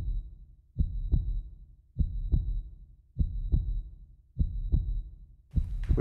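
Heartbeat sound effect: low paired lub-dub thumps repeating evenly about once every 1.2 seconds. Each beat carries a faint high tone, and a hiss comes in near the end.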